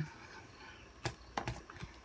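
A few light knocks in quick succession starting about a second in, from a drinking cup being set down and handled on a table.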